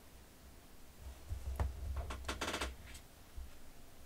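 Art supplies handled on a cutting mat: a water brush pen set down and a sheet of cardstock picked up, giving a quick run of light clicks and taps with low bumps, starting about a second in and stopping before the three-second mark.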